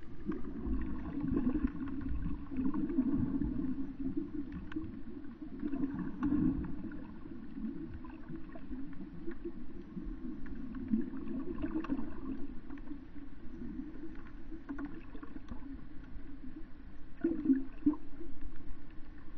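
Muffled underwater sound from a camera held below the surface: a continuous low rushing of moving water that swells and fades unevenly, with scattered faint clicks.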